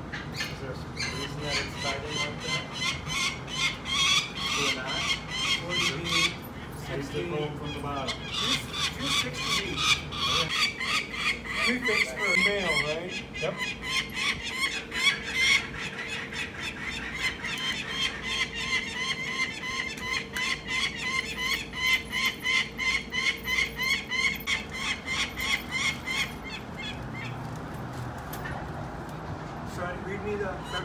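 Downy peregrine falcon chick, about three weeks old, calling over and over at about three calls a second, with short breaks about a quarter of the way in and near the end.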